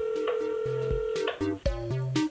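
Telephone ringback tone heard through the caller's phone: one steady tone about two seconds long that stops about 1.3 s in, as the call rings at the other end. A music beat with low bass notes and kick drum strikes starts under it about two thirds of a second in and carries on.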